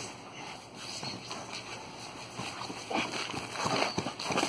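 Padded practice spears knocking together and feet scuffling on grass, a string of irregular soft knocks that grows busier and louder toward the end as the fighters close in.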